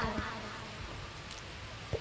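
Faint, steady background noise in a short gap between spoken phrases, with no distinct sound event.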